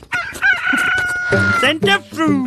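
Rooster crowing: one long crow that rises, holds a steady high note for about a second, then breaks off near the end.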